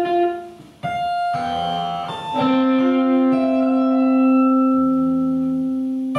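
Electric guitar ensemble playing long sustained, overlapping notes. The sound fades away about half a second in, then new held notes come in one after another and build into a lasting chord.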